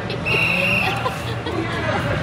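Crowd chatter in a large hall, with a brief high, steady squeal from about a quarter second to one second in.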